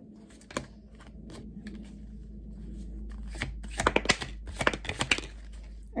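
A tarot card deck being shuffled by hand: scattered crisp clicks of cards, then a quick flurry of snapping and rubbing from about three and a half to five seconds in.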